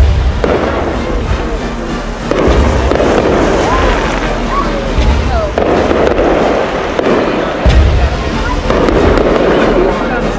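Aerial fireworks bursting: four deep booms about two and a half seconds apart, each followed by a dense crackle.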